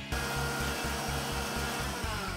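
Inalsa food processor motor starting suddenly and running with a steady high whine, spinning the blade in the stainless steel chutney jar as it grinds chutney. Background music with a steady beat plays underneath.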